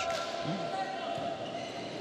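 A volleyball struck hard once at the start in a jump serve, then the steady sound of a large gym with a short voice about half a second in.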